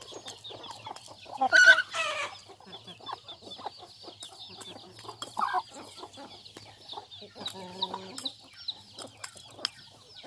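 Thai native chickens clucking as they feed, with one loud call about one and a half seconds in and shorter calls later. Short clicks run throughout, which fit beaks pecking at a plate. A continuous high chirping goes on behind.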